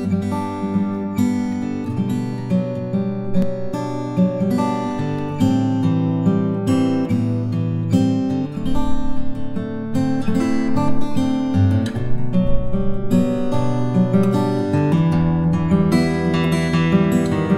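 Hawaiian slack key acoustic guitar music: fingerpicked notes over a bass line, playing steadily.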